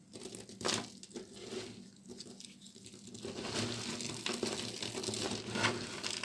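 Dry soap shavings crushed and crumbled between the fingers: a few scattered crisp crackles for the first three seconds, then a denser, continuous crackling.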